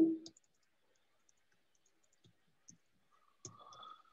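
Faint, scattered clicks of someone working a computer, a few over several seconds, with a brief faint hum near the end.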